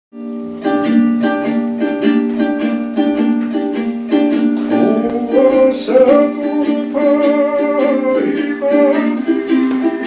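A panduri, the Georgian three-stringed lute, strummed in a steady even rhythm; about five seconds in, several men's voices join it, singing long held notes in close harmony.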